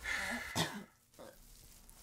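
A man clearing his throat: one short, rough burst under a second long, peaking about half a second in, followed by a faint catch of breath.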